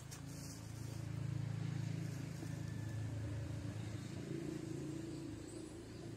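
Low, steady engine rumble that swells about a second in and then holds level.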